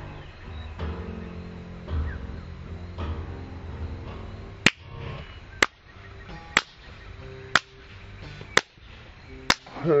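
Multi-tracked acoustic blues guitars playing. The music thins out about halfway through, and six sharp clicks follow, evenly spaced about a second apart.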